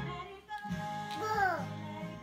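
A baby's voice singing along to recorded music: one held high note that slides downward about a second and a half in, over a steady musical accompaniment.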